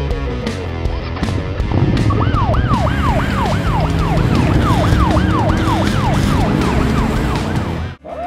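Police siren sound effect, a quick rising-and-falling wail about three times a second, starting about two seconds in and stopping just before the end, over background music.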